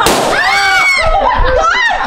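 A balloon bursting with one sharp bang right at the start, followed by excited high-pitched voices shouting.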